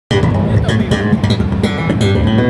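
Electric bass guitar played fingerstyle through an amplifier: a fast run of plucked notes, starting abruptly as the clip begins.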